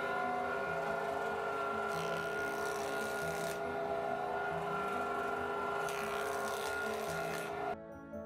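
Electric planer (jointer) running with a steady whine, pine blanks fed over its cutter head in two passes about 2 and 6 seconds in, each a burst of cutting noise lasting about a second and a half. The machine sound cuts off suddenly near the end.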